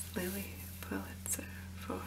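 Long fingernails tapping and scratching on a textured fabric cosmetic bag, mixed with soft whispering. A steady low hum from the camera's own microphone sits underneath.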